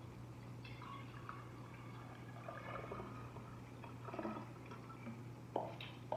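Liquid poured from a plastic measuring cup into a glass carafe, faintly filling the bottle. A sharp knock comes near the end.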